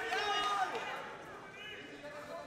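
Faint shouting voices from people around the cage during a lull in the commentary.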